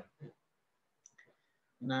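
A brief pause in a man's speech, near silent, with two very faint clicks about a second in; the speech resumes near the end.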